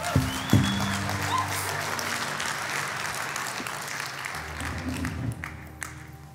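Congregation applauding, dying away after about four and a half seconds, over a held low chord of background music, with a thump about half a second in.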